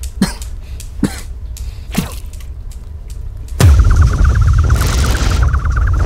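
Steel balls of a Newton's cradle clacking about once a second over a low steady rumble. About three and a half seconds in, a sudden loud swell of deep bass comes in with a warbling high tone and hiss.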